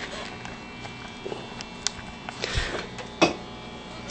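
Handling noise as a phone or camera is moved about: a few sharp clicks and short rustling bursts over a steady low hum.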